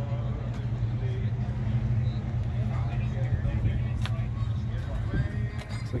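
A steady low hum, with faint voices in the background and a single sharp click about four seconds in.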